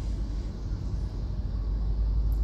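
Steady low rumble of a car in slow stop-and-go traffic, heard from inside the cabin.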